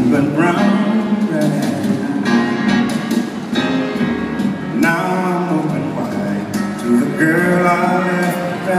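Live jazz band playing an instrumental passage between sung lines: piano and double bass under a melodic line, heard from far back in a large concert hall.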